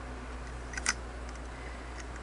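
A single light click about a second in, over a steady low hum, as the mounting screw of the slide plate tension spring on a Singer 403A sewing machine is turned to tighten it.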